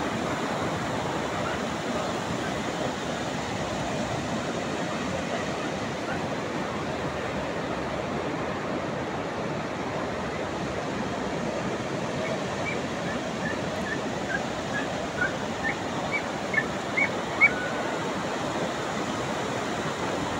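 Steady wash of sea surf on a beach. In the second half, a quick run of about a dozen short, high chirps sounds over the noise.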